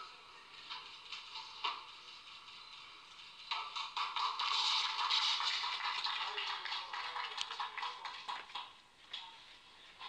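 Audience clapping: a burst of applause starts about three and a half seconds in, holds for several seconds and fades out near the end, following a weightlifter's attempt.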